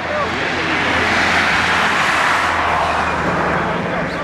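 A passing vehicle: a rushing noise swells to a peak about two seconds in and fades away again.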